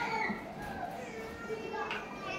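Children talking and playing in the background, their voices wavering and fairly faint.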